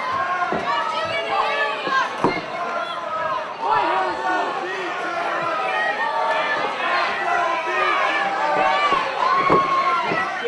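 Wrestling crowd shouting and cheering, many voices overlapping, some of them high-pitched, with a few thumps near the start and near the end.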